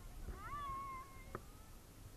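A single high, drawn-out vocal call from a person in the water: it rises and then holds level for about a second, sounding meow-like. A short sharp knock follows just after it.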